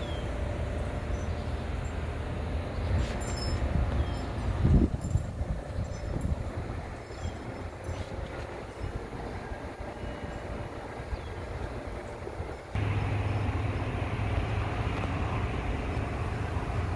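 Steady low rumble of outdoor background noise, with a brief thump about five seconds in. The rumble steps up abruptly near the end.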